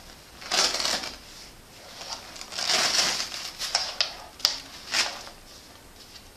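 A nylon sling pack being handled as a foam pad is pulled out of it: two longer scraping rasps of fabric, then a few sharp clicks.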